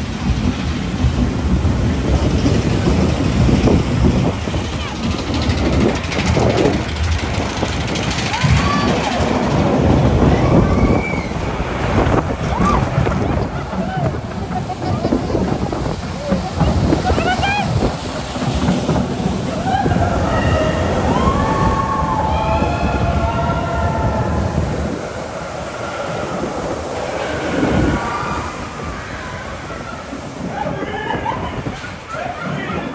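Onboard sound of a steel roller coaster in motion: the train running along the track with heavy wind noise on the microphone. Riders scream and whoop over it at several points, with a cluster of screams about two-thirds of the way through.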